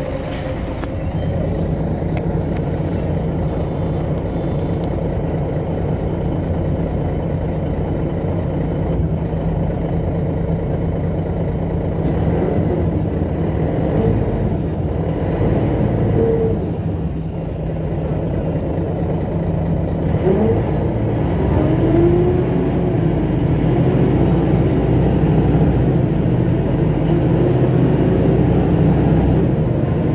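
Cabin sound of a MAN NG313 articulated diesel city bus: steady engine and drivetrain drone with road noise, growing somewhat louder in the second half.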